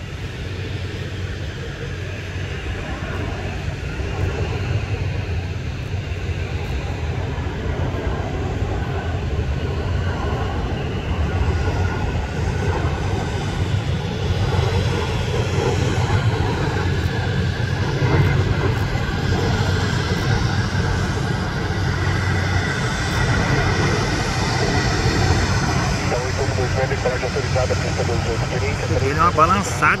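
Jet engines of a Boeing 767 freighter on final approach to land: a loud, steady racket with a faint whine, growing louder as the aircraft comes in low.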